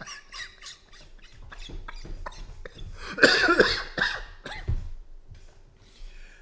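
A man laughing in a series of short bursts, with a louder, higher-pitched stretch about three seconds in.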